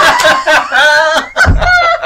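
Loud, high-pitched shrieking laughter and exclamations from people reacting to a surprise quiz answer.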